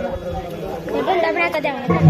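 People talking in casual chatter, with a higher-pitched voice joining about halfway through.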